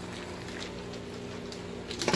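Vegetables and chicken with a little water simmering and sizzling in a steel pot on a stove: a steady hiss with faint crackles over a low steady hum.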